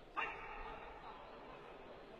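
One short, sharp shout about a fraction of a second in, a taekwondo fighter's kihap, over the steady murmur of the arena.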